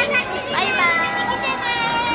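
High-pitched excited voices calling out, children's among them, with a rising squeal about half a second in and drawn-out high calls after it.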